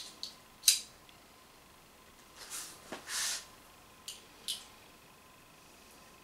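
A few sharp clicks and short scraping rustles from handling a Umarex Walther PPQ M2 pistol and its magazine while reloading it, separated by quiet gaps.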